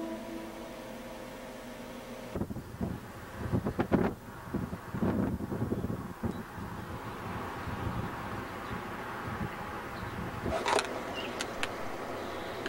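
Outdoor river ambience: flowing water as a steady hiss, broken by irregular low rumbles a few seconds in and a few sharp clicks near the end. Held music tones fade out at the start.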